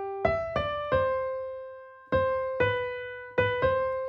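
A short, simple melody in C major played one note at a time on a piano-voiced keyboard, each note struck and left to fade. About seven notes, the last one held and dying away.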